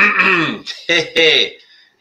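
A man clearing his throat in two short voiced bursts, with a click between them, just before he starts talking.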